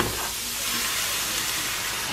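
Chopped onion sizzling in browning butter in a frying pan: a steady hiss.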